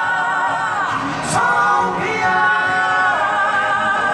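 Male crossover vocal group singing live over a backing track, voices blended in harmony on long held notes with vibrato, moving to a new chord about once a second.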